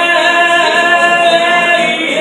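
Live solo singing in an acoustic set: the singer holds one long sung note.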